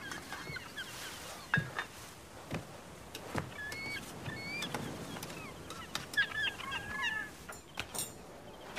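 Birds calling with short chirps and whistled gliding notes, thickest near the end, among a few soft knocks.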